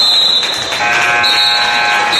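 Gym scoreboard horn sounding: a steady, multi-toned buzz that starts almost a second in and holds to the end. A high steady tone sounds briefly at the start and comes back alongside the horn.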